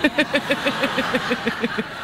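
Laughter: one person's rapid, pulsing laugh at about nine beats a second over a studio audience laughing, fading toward the end.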